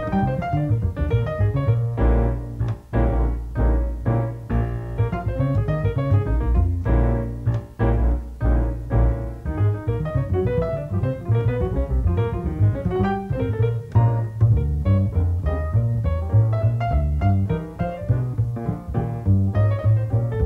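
Solo jazz on a grand piano: a continuous flow of chords and melody lines over a strong, full low register.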